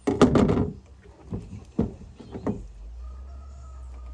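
A loud quick clatter of knocks, then several separate sharp knocks, from pork being cut and handled with a knife on a pickup truck's plastic bed liner and tailgate. A low steady hum comes in after about two and a half seconds.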